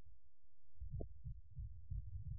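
Deep, muffled thumping of live heavy metal music in which only the kick drum and bass come through. A quick run of thumps, several a second, starts under a second in.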